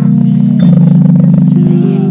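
A group of carolers singing a Christmas carol in long held notes, changing note about one and a half seconds in.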